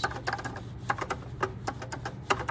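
Elevator hall call push buttons clicking as they are pressed over and over: a rapid, irregular run of about a dozen sharp clicks over a low steady hum.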